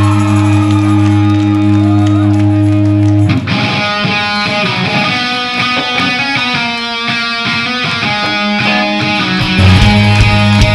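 Electric guitar from a hollow-body with twin humbucking pickups, played loud in a rock band. A steady held chord rings for about the first three seconds, then gives way to a rhythmic picked pattern, and the sound grows louder and fuller just before the end.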